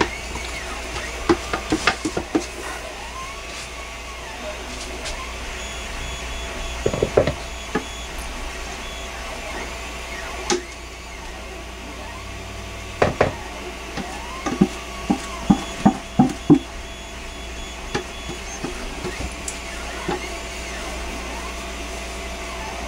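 Spatula scraping thick, fast-setting pine tar soap batter out of a container into a loaf mold: irregular scrapes, squeaks and knocks, clustered about a third of the way in and again past the middle. A steady low hum runs underneath.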